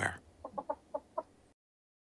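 A hen clucking: about five short clucks in quick succession, then the sound cuts off to silence.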